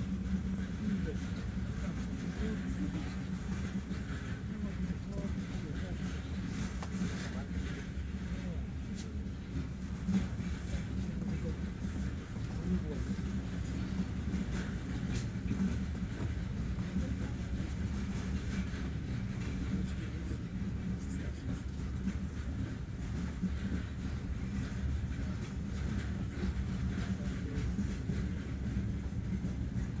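A 2M62 diesel locomotive's two-stroke V12 diesel engine running steadily, a low, even rumble muffled by window glass.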